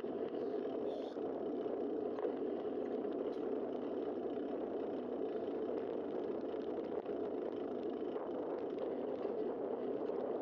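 Steady rushing noise of a bicycle riding along a paved street, picked up by a camera mounted on the bike: tyre roll and wind noise at an even level.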